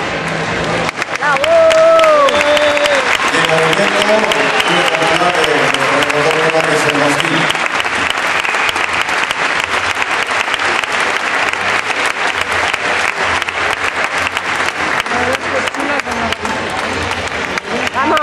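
Audience applauding steadily, with voices calling out over the clapping during the first several seconds.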